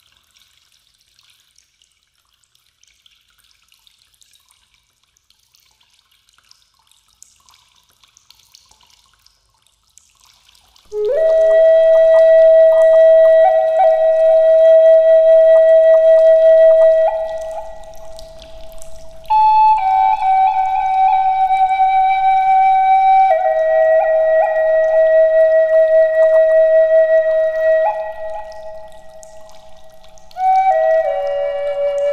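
Background music: a flute-like wind instrument plays slow, long-held notes, entering about eleven seconds in and stepping to a new pitch every few seconds. Before it comes in there is only a faint trickling, dripping water sound.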